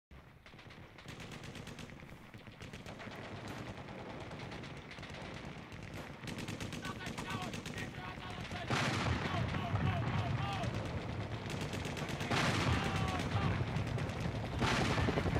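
Wind buffeting the microphone: a rapid crackling rattle that grows louder, with stronger gusts about two-thirds of the way in and again near the end.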